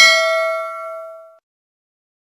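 A bell-chime notification sound effect: a single bright ding with several ringing tones that fades out within about a second and a half.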